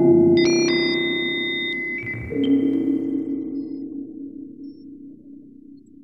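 Eurorack modular synth chords from a Patch Chord module ringing through a Springray spring reverb, with high electronic beeping tones on top. The chord shifts about half a second in and again at about two and a half seconds, then rings out and fades away.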